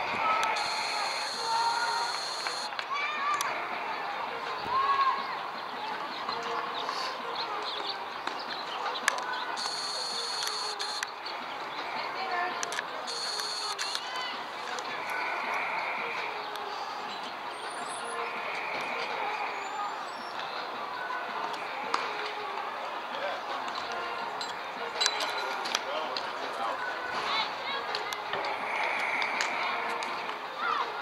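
Indistinct chatter and calls from softball players and spectators around the field, with a few short sharp knocks.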